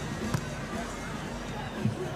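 Two sharp hand-on-ball contacts of a volleyball rally, about a second and a half apart, over crowd chatter and background music from the stands.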